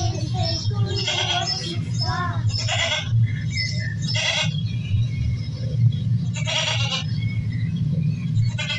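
Goat bleating, a string of short calls roughly once a second, over a steady low hum.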